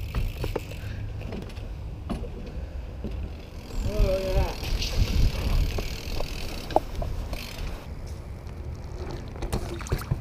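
BMX bike being ridden, with low wind rumble on the handlebar-mounted camera's microphone and scattered knocks and rattles from the bike and tyres. A short pitched sound, like a brief voice, comes about four seconds in.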